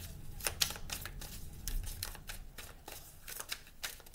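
An oracle card deck being shuffled by hand: an irregular run of quick card clicks and flicks.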